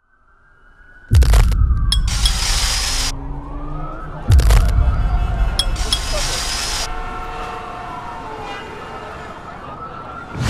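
Produced sound effects: a siren wailing up and down over two heavy impacts with deep bass, the first about a second in and the second about three seconds later, each followed by a burst of hiss, then slowly fading.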